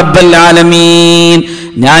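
A male preacher's voice holding one long, drawn-out chanted note at a steady pitch for over a second, then a short pause before his speech picks up again near the end.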